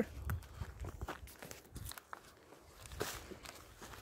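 Footsteps on a dry dirt trail: uneven steps with soft thuds and small crunches, fairly quiet.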